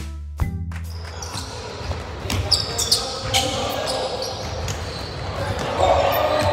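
The last hits of a music track's beat end about half a second in. Then comes the sound of a pickup basketball game in a gym: a ball bouncing, a couple of short sneaker squeaks on the hardwood, and players' voices, which grow louder near the end.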